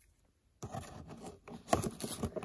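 Scissors cutting into a taped cardboard box: a scraping, rustling noise that starts about half a second in, with a few sharper clicks from the blades and cardboard.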